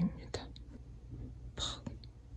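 A woman's speech trails off at the start, then the room is quiet except for a short hissy whisper near the end.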